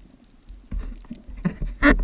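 Underwater handling noise from a GoPro in a waterproof housing on a PVC pole as it is swung through the water: a low rumbling water rush with several knocks, the loudest a sharp knock near the end.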